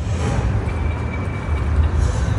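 Loud outdoor street noise with a steady low rumble and hiss.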